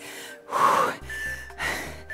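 A woman breathing hard during a lunge exercise, two heavy breaths about half a second and a second and a half in, over background music.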